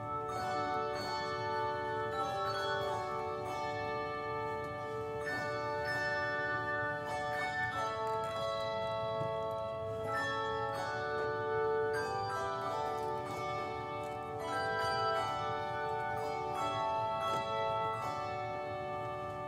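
Handbell choir playing a hymn-style piece: chords of struck bronze handbells that ring on and overlap, with new notes sounding every second or so.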